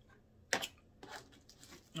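A single sharp knock about half a second in, followed by faint, scattered rustling handling noise.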